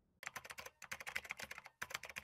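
Computer keyboard typing sound effect: a fast run of key clicks, about ten a second, broken by two short pauses.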